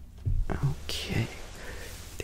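A man's soft, unintelligible whispering in short snatches during the first half.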